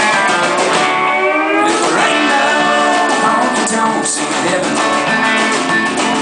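A live country band playing an instrumental passage: electric guitar lead with notes bent up and down over drums and bass.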